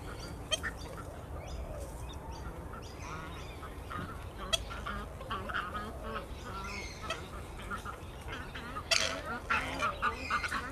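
Purple swamphen giving a run of short, repeated calls, like hiccups, with a louder burst of calls near the end.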